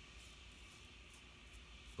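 Near silence broken by a few faint, short scrapes of a Merkur 37C slant-bar safety razor cutting stubble on the upper lip, over a low steady room hum.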